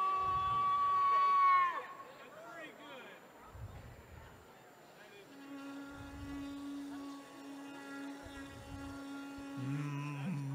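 Shofar blasts. A high held note bends down and breaks off about two seconds in. After a pause, a lower held blast starts about five seconds in and runs on, with a still lower note breaking in near the end.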